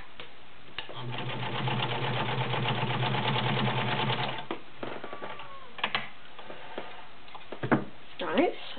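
Kenmore model 1318 all-metal sewing machine running and stitching rapidly through four layers of denim for about three and a half seconds, then stopping. A few clicks follow as the fabric is handled.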